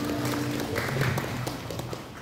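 Audience clapping as the song's backing music stops; a few held notes of the music fade out within the first second.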